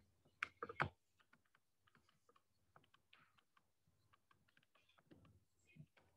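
Faint, irregular light taps of a stylus on a tablet screen during handwriting, with a single spoken word just under a second in.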